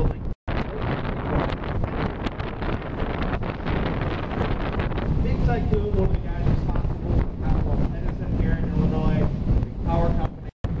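Wind buffeting the microphone aboard a moving tour speedboat, mixed with the rush of water and the boat's motor. The sound cuts out completely for a moment about half a second in.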